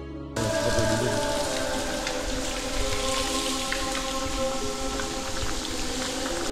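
Wall-mounted toilet cistern flushing: a steady rush of water that starts abruptly just after the beginning, over soft background music.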